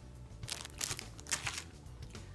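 Thin clear plastic bag around a sealed eraser crinkling as it is handled, a run of short crackles in the middle.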